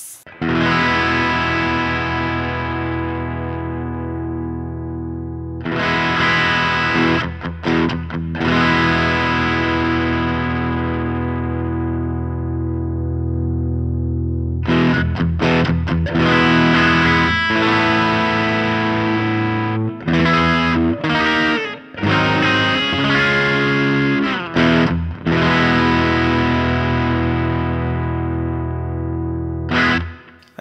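Electric guitar played through a Kardian Serotonin Origin S.T., a Tube Screamer-type overdrive pedal, with the drive at about noon while the bass knob is adjusted. Strummed chords are left to ring and fade for several seconds each, then from about halfway on come busier chords and single-note phrases with brief gaps.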